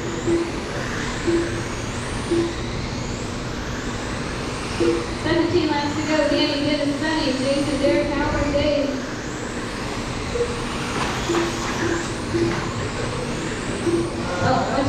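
Radio-controlled race cars lapping a dirt oval, their small motors whining, with the pitch rising and falling over and over as the cars pass.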